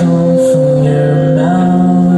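Guitar and violin playing a slow instrumental passage together, with long held violin notes and one note gliding upward partway through.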